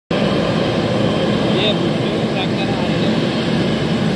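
Boeing 777-300ER's GE90 turbofan engines running at taxi power: a steady, loud rush.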